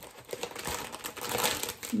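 Plastic packaging crinkling and rustling as it is handled, in quick irregular crackles.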